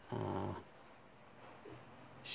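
A man's brief wordless hesitation sound, a low drawn-out "uhh" or "mm", lasting about half a second near the start.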